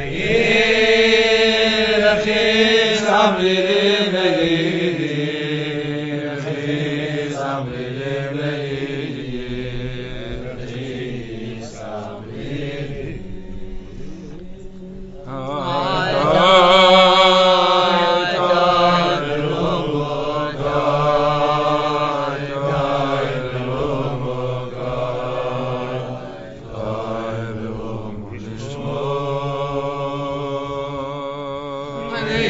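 Voices singing a slow, repetitive wordless melody in long held notes, fading somewhat in the middle and swelling again about halfway through.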